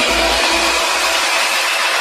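Vinahouse electronic dance music at a breakdown: a steady hiss of synth noise fills the mix while the deep bass fades out about a second in.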